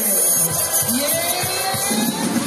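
Live blues band playing, with a lead line that slides up and down in pitch over the band.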